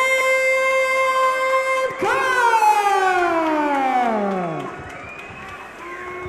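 Ring announcer's drawn-out call of a fighter's name: one long held note for about two seconds, then a second long call that starts high and slides steadily down in pitch over about two and a half seconds, fading into quieter hall sound near the end.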